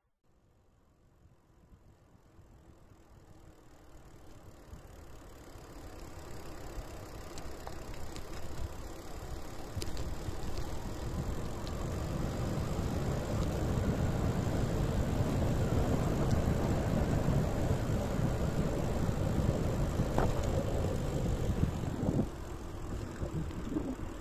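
Low, even rumble of wind and road noise from a camera travelling along a paved road, fading up from silence over the first dozen seconds and then holding steady.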